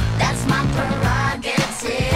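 Pop song with a female-sounding lead vocal over a steady beat, played from a vinyl record on a DJ turntable through the club sound system.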